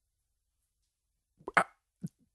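Dead silence for most of the pause, then, about one and a half seconds in, a brief mouth noise from a man: a short lip smack or click with a faint bit of voice, as he draws breath to speak again.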